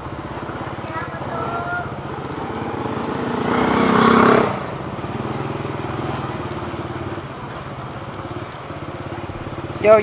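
Motorbike engine running steadily underneath, with a rush of noise that swells to its loudest about four seconds in and then drops away.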